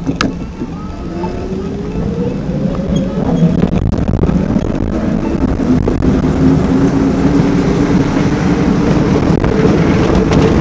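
Bafang BBSHD mid-drive e-bike motor whining, rising in pitch as the bike pulls away and gathers speed, then holding a steady whine. A steady rush of road and wind noise runs under it.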